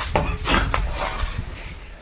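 A few short thuds and scuffs of feet landing on a hard floor as a fighter comes down from a jumping kick. The knocks come in the first second, then fade.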